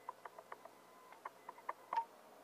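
Faint, scattered light clicks and ticks, about a dozen over two seconds, from hands handling a pinned fabric hem sample, over a faint steady high tone.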